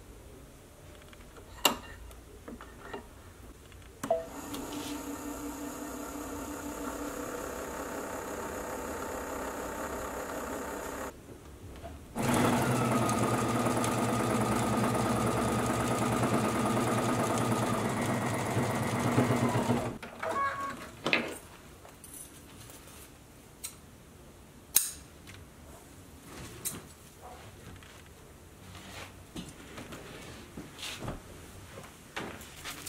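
Brother Stellaire sewing machine. A steady whir for about seven seconds as an empty bobbin is rewound with black thread, a short pause, then a louder run of stitching for about eight seconds. Scattered clicks and handling knocks come before and after.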